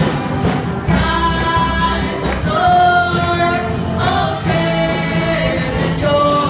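Live amateur band playing a song: a male and a female singer singing into microphones, with long held notes, over electric guitar and drums.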